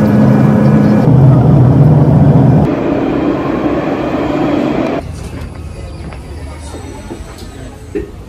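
Steady drone of a passenger jet's cabin for the first few seconds, then a red light-rail tram pulling into a stop, with the hum inside the tram, quieter, over the last few seconds.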